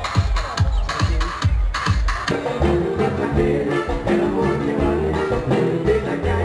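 Live Latin band music at a concert: about two seconds of drum-and-percussion groove, then the rest of the band comes in with a dense run of pitched instrumental notes over the beat.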